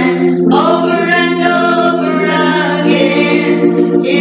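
A woman singing a slow gospel song solo into a microphone through a church PA, holding long notes that slide between pitches, over a steady low sustained tone.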